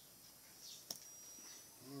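Near-silent room tone with a few faint, short bird chirps, and one sharp click about a second in as a ballpoint pen is set down on a notebook.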